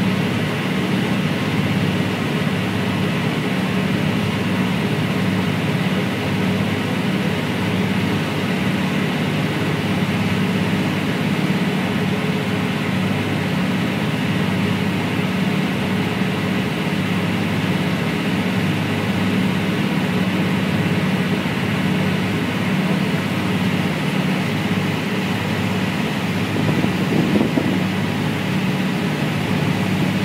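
Steady engine hum aboard a small river car ferry, low and even in pitch, with a brief wavering near the end.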